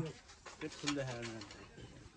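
Faint, low voices in the background, with a held low note about a second in.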